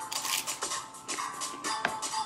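Background music playing, with a few sharp crunches of a hard taco shell being bitten and chewed.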